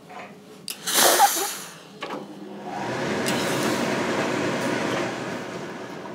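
Steam iron pressing fabric: a short, loud hiss of steam about a second in, then a longer, steady rushing hiss of steam from about three seconds in, easing off near the end.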